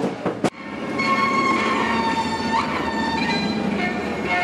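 Lion dance drum and cymbal beats that cut off abruptly about half a second in. They are followed by steady music of several held, overlapping notes, with a brief pitch slide in the middle.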